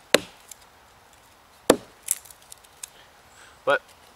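Gransfors Bruks Outdoor Axe splitting small sticks of partly decayed maple into kindling: two sharp knocks of axe and stick striking the log, about a second and a half apart, with a few lighter clicks of wood after each. The maple is soft with rot and chips out rather than splitting cleanly.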